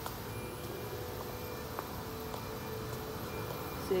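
Steady factory-floor machinery hum with a faint held tone and a few faint ticks.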